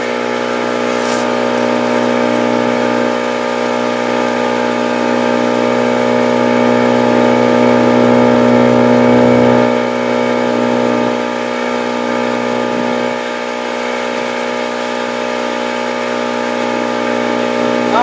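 A boat's engine running steadily, with a steady hum. It grows a little louder for a few seconds midway, then eases back.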